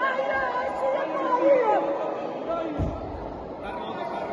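Spectators' overlapping chatter and voices in the hall around the ring, no one voice standing out.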